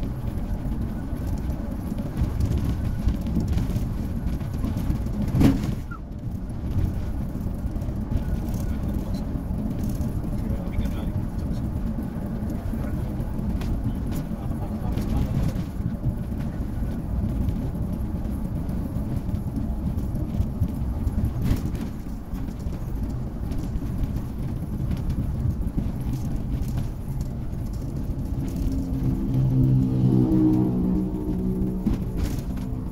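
Steady low rumble of a moving bus's engine and tyres, heard from inside the cabin, with one sharp knock about five and a half seconds in. Music comes in near the end.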